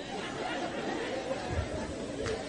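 Faint room noise with a low murmur of background voices, no clear words.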